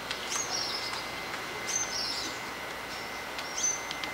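A bird calling the same short, high phrase three times, about every one and a half seconds: a sharp rising note followed by a buzzy trill. Under it runs a faint steady hiss with a thin, steady high tone.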